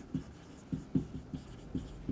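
Marker pen writing on a whiteboard: a quick run of short, separate strokes as letters are written.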